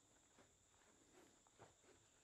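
Near silence: room tone with a few very faint, short ticks.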